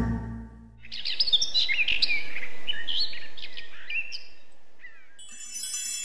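Birdsong: quick chirps and short whistled glides over a soft background hiss, coming in about a second in and slowly fading. Near the end, high bell-like tinkling tones begin.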